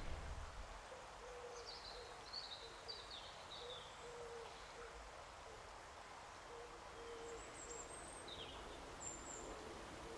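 Faint outdoor birdsong: a low call repeated in short notes throughout, with higher chirps in the first few seconds and thin high notes near the end.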